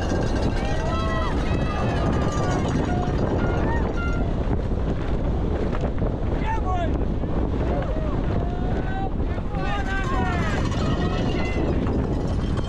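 Steady wind rush on a helmet-mounted camera and the rumble of a downhill mountain bike running fast over a rocky track, with spectators shouting and whooping in several bursts as the bike passes them.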